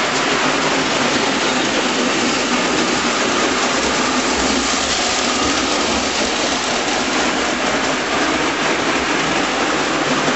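Märklin gauge 1 tinplate Pacific locomotive and its coaches running on tinplate track: a steady rushing rattle of wheels on the rails with the high-voltage motor running, a little fuller in the low end as the coaches pass close about midway.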